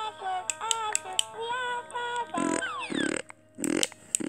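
LeapFrog Baby Tad plush toy playing an electronic tune of short stepped notes through its small speaker, with a few sliding notes after about two and a half seconds. Near the end come three short, loud, rasping noises.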